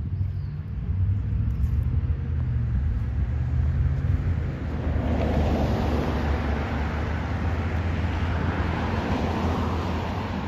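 A motor vehicle's engine running, out of sight, as a steady low hum; about halfway through a broad rush of road noise swells in as it comes closer.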